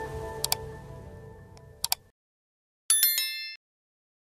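Intro-jingle music fading out, with two quick pairs of sharp clicks from a subscribe-button animation, then a short, bright, high-pitched chime near the end.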